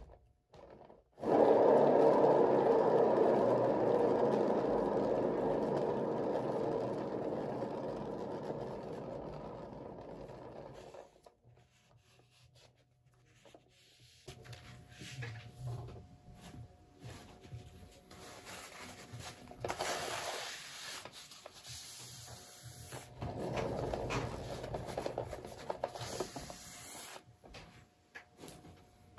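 Paint-pour spinner turning a freshly poured tile. A loud, even spinning noise starts suddenly about a second in and fades away over about ten seconds, then quieter, irregular rubbing and scraping follows as the spin is worked further.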